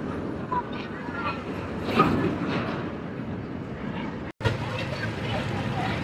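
Roller coaster train running along its steel track, loudest about two seconds in, over the voices and chatter of an amusement-park crowd. The sound breaks off briefly a little past four seconds, then the crowd chatter goes on.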